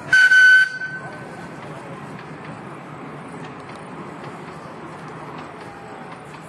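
A single short, loud whistle toot at one steady high pitch, lasting about half a second right at the start, followed by steady background noise and distant voices.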